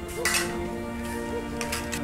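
Cutlery clinking against plates twice, about a quarter second in and again near the end, over soft sustained background music.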